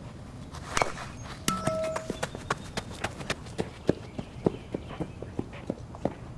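A run of short, sharp clicks or taps, irregular and a few a second, with a brief steady tone about a second and a half in.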